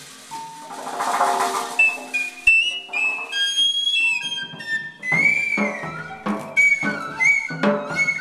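Live jazz group playing: a cymbal wash over low held notes, then a high wind instrument playing long, bending notes from about two seconds in, breaking into short, accented phrases with the band about five seconds in.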